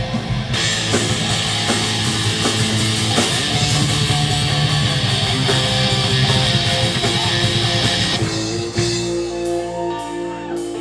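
Live heavy metal band playing: distorted electric guitars, bass and a drum kit with cymbals. A little after eight seconds the dense full-band playing breaks off, leaving a held guitar note and a few separate drum hits.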